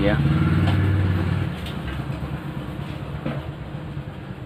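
A steady low engine hum, loudest for about the first second and a half and then fading away, with the end of a spoken word at the very start.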